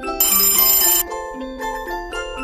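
Alarm clock bell ringing, starting just after the start and cutting off about a second in, over light glockenspiel music.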